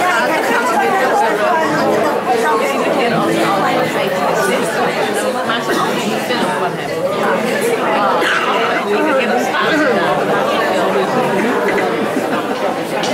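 Many people talking at once in a large hall: steady party chatter, with no music playing.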